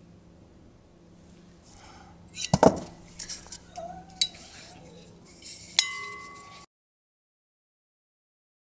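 Metal fork and wire clinking and tapping against a glass beaker as a balancing toy is set on its rim: a cluster of clinks about two and a half seconds in, a sharp click a little after four seconds, and a last clink near six seconds that leaves the glass ringing. The sound then cuts off suddenly.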